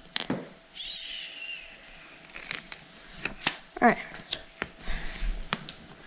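Paper backing peeled off the adhesive battery pad and the pad pressed into place: a run of small clicks and crackles, with a thud about five seconds in. A brief high wavering tone comes about a second in, and a short vocal sound a little before the four-second mark is the loudest moment.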